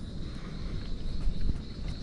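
Jungle ambience: a steady thin high insect drone over irregular low rumbling and a few soft knocks from the camera being carried along the trail.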